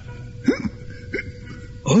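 A man's voice making two short hiccup-like gulps in a pause in narration, the sound of someone choking on food caught in his throat. Faint background music runs under it.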